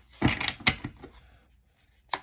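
A deck of tarot cards being handled on a wooden table: a short rustle of shuffled cards followed by a couple of sharp taps.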